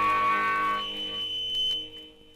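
The final chord of a pogo punk song on a 1993 demo recording ringing out, with a high steady electric-guitar feedback whine over it. It decays and fades away near the end.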